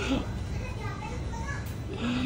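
Children's voices chattering faintly, high-pitched and some way off, over a low steady background hum.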